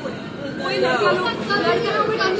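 Several people talking at once, with overlapping conversational voices and no clear words.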